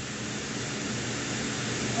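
Steady background hiss with a faint low hum underneath, unchanging throughout.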